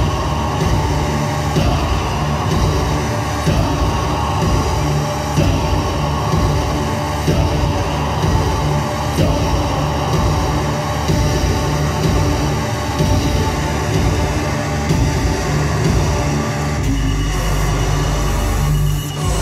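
Loud live electronic music from a synthesizer rig: dense, noisy rumbling textures over a deep bass pulse that repeats about once a second and settles into a steady low drone near the end.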